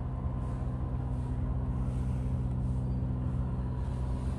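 Electric fan running with a steady low motor hum.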